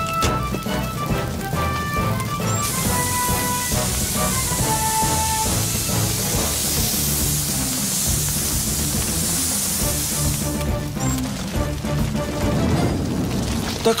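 Background music with a steady hissing rush of a water cannon jet spraying onto a fire, starting suddenly about two and a half seconds in and stopping about ten and a half seconds in.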